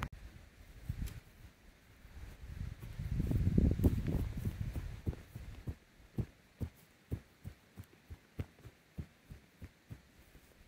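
A few seconds of low rumbling, then a steady run of dull thuds, about two to three a second: rubber boots stepping on grass-covered ground close to the microphone.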